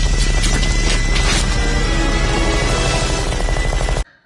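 Loud, dramatic movie-soundtrack music over the deep rumble of an explosion, cutting off abruptly at the end.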